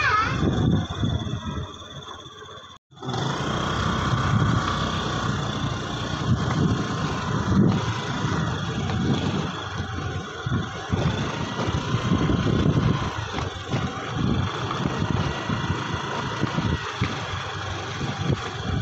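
Motor scooter being ridden: engine and road noise under a gusting rumble of wind on the microphone, with a brief break about three seconds in.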